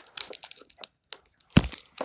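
Foil booster-pack wrapper crinkling and crackling in the hands as it is worked open, with one heavy thump about one and a half seconds in.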